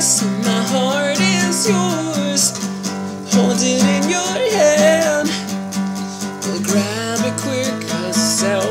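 A man singing over a strummed acoustic guitar, the chords going on steadily under his wavering vocal line.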